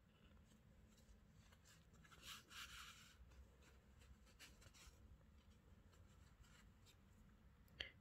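Near silence, with a faint rustle of hands handling a crocheted doll head and its yarn about two to three seconds in.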